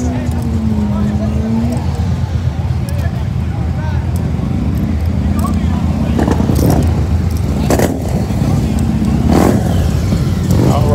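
Motorcycle engines running with a steady low rumble and voices around them, with a few louder bursts in the last few seconds.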